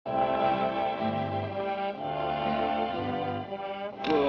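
Orchestral cartoon score playing sustained brass-led chords that change about once a second.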